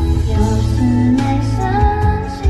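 Karaoke music playing: the backing track of a pop song, with a steady bass under sustained melody lines.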